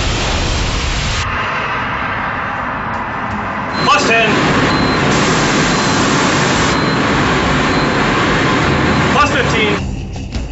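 EAC hybrid rocket motor firing on a static test stand: a loud, steady rushing noise that runs without a break through the burn, changing character abruptly about a second in and again about four seconds in.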